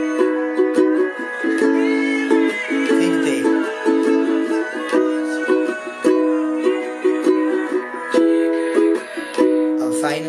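Ukulele strummed in a steady rhythmic pattern, moving between A and B major chords.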